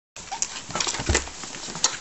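Rustling and scuffling of a fabric play tent in a cardboard box as a hand tussles with a ferret hiding inside it, with irregular sharp scrapes and a soft thump about a second in.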